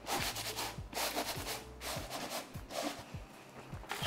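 Red metal springform cake pan shaken and slid about on a wooden board to level the cream filling. Its base scrapes and knocks against the wood in a run of soft taps and rubs, several a second, easing off near the end.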